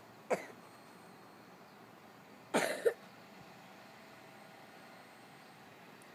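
A person coughing: one short cough about a third of a second in, then a louder, longer double cough a couple of seconds later.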